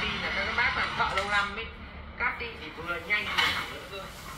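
Indistinct talking, with no other sound standing out clearly.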